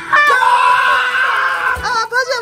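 A high-pitched excited squeal of delight from a high voice, held steady for about a second and a half, then a shorter wavering squeal near the end.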